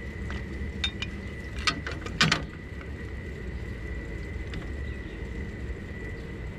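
Metal clinks and knocks of a Harbor Freight swivel trailer jack and its steel mounting brackets being handled and fitted against a steel trailer tongue. There are a few sharp clinks in the first two and a half seconds, the loudest a little over two seconds in.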